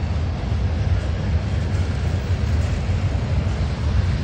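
Covered hopper cars of a freight train rolling past close by: a steady rumble of steel wheels on rail with a noisy hiss above it.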